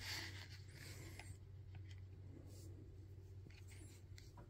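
Faint rustling and scraping of hands handling plastic toy parts and the camera, strongest in the first second or so, over a steady low hum.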